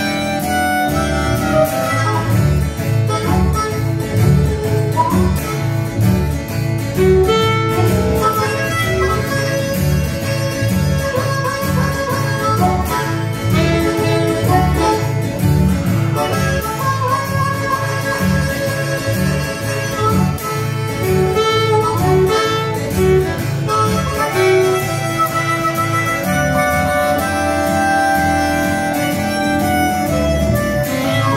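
Live acoustic band playing an instrumental break: harmonica playing the lead over plucked upright double bass and acoustic guitar, with a saxophone. The bass keeps a steady, even pulse throughout.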